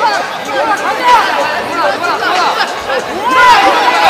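Many overlapping voices shouting and calling out at once, typical of coaches and spectators yelling to grapplers during a jiu-jitsu match, in a large hall.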